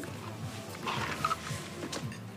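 Quiet background music in a bar-restaurant, with a faint murmur of indistinct voices.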